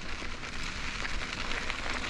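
Mountain bike tyres rolling over a dirt-and-gravel road, a steady fine crackling hiss.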